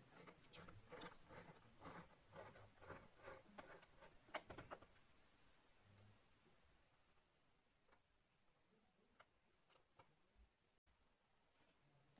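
Very faint, quick ticking and scraping of a small screwdriver turning out a battery screw in a 2009–10 MacBook's case, for about the first five seconds, then near silence broken by a few isolated ticks.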